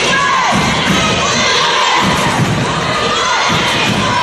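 A high-school gym basketball crowd cheering and shouting, with young voices calling in a repeating chant whose pitch falls with each call, about once every second or so.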